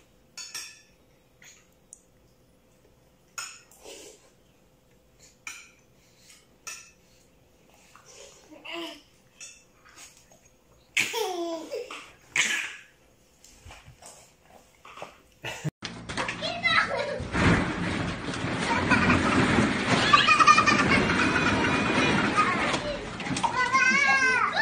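A baby's short, scattered vocal sounds, then about two-thirds of the way through a much louder, continuous stretch of children's shrieks and laughter.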